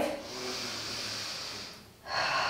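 A woman's long, hissing breath taken with effort while she does tricep dips in a reverse tabletop hold. It fades out near the end.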